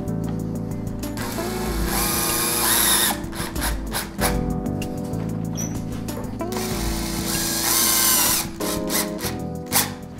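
Cordless drill-driver driving a screw through a roller-shutter strap into the steel roller shaft, with background music throughout.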